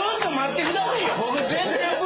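Only speech: several people talking over one another around a table.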